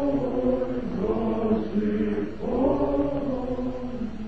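A choir singing a slow chant in long held notes, in two phrases with a short break about two and a half seconds in.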